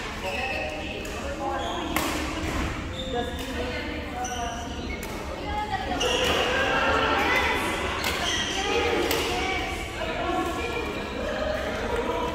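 Echoing sports-hall background of many overlapping voices, with a few sharp knocks and smacks from play on the courts.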